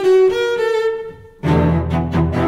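Instrumental cello rock: bowed cellos holding high sustained notes with the low part silent, a brief lull, then the low cello parts coming back in strongly about one and a half seconds in.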